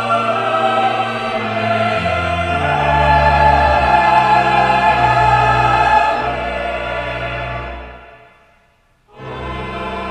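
Church choir singing sustained chords in parts. About eight seconds in, the phrase dies away into a short silence, and the singing starts again a moment later.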